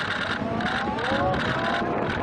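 Motorboat engine running with a pulsing drone, with several voices yelling in rising and falling whoops.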